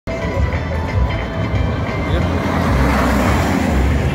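A car driving past close by, its engine and tyre noise swelling to a peak about three quarters of the way through, over the chatter of spectators.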